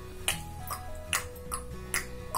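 Background music: a soft melody of held notes that step from one pitch to the next, over a light ticking beat of a little over two clicks a second.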